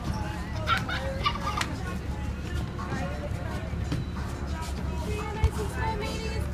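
Children's excited voices and squeals over background music and a steady low rumble, with a single sharp knock near the end.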